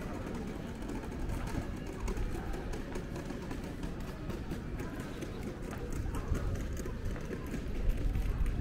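Pedestrian street ambience: footsteps clicking on stone paving and the voices of passers-by, over a low rumble.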